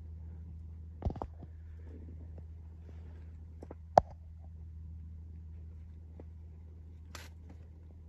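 Low steady hum, with a couple of light taps of a finger on the scan tablet's touchscreen about a second in, and one short sharp click about four seconds in.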